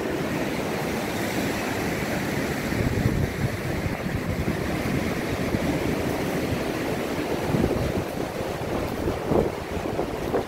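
Ocean surf washing in with a steady rushing, with wind buffeting the microphone.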